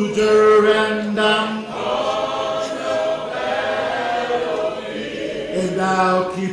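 Slow unaccompanied singing of a hymn in long held notes, a man's voice in front with other voices behind.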